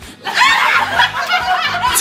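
Loud laughter from a group of women breaks out suddenly about a third of a second in, over a pop song playing in the background.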